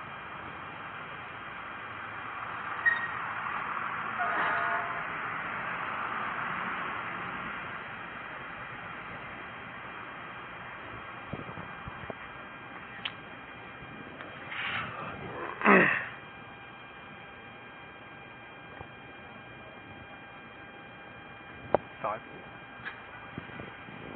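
Steady hiss and electrical hum from a police body camera's microphone, with a swell of rushing noise lasting a few seconds early on and two brief louder sounds about fifteen seconds in.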